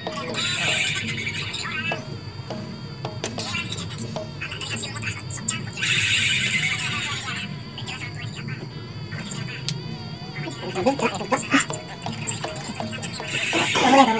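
Three rasping rustles of rope being pulled through the edge of a cloth cover as it is laced on, each lasting about a second, near the start, in the middle and at the end. Music with singing plays underneath throughout.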